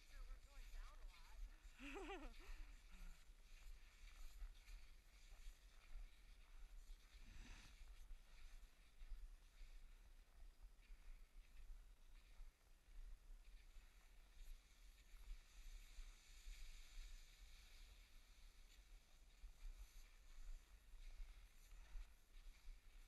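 Near silence: a faint steady low hum, with a brief faint voice about two seconds in.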